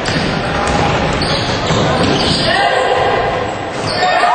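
Basketball game in a gymnasium: a steady mix of crowd noise and voices, with a ball bouncing on the court.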